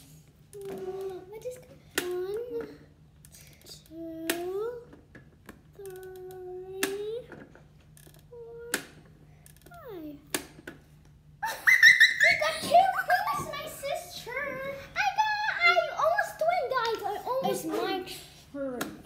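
Pie Face toy's handle being turned, a sharp click about every two seconds, each followed by a child's short tense hum or 'ooh'. From a little past halfway, loud excited children's shrieks and laughter take over.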